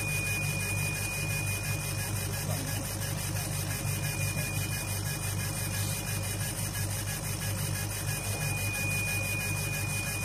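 Laser engraving machine running with a rotary chuck turning a glass wine bottle under the moving laser head: a steady low hum with a faint high whine that comes and goes every few seconds.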